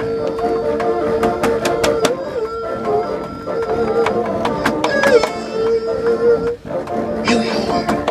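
A singer on a microphone holds long, slightly wavering notes over a bassoon ensemble, with sharp percussive clicks running through the music.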